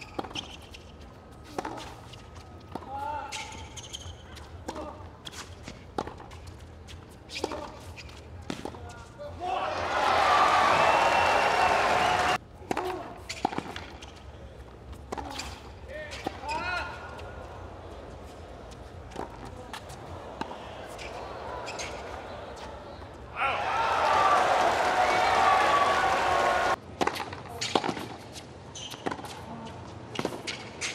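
Tennis rallies on a hard court: repeated racket strikes on the ball. A crowd breaks into loud cheering and applause twice, about ten seconds in and again a little past twenty seconds, and each time the cheering cuts off abruptly.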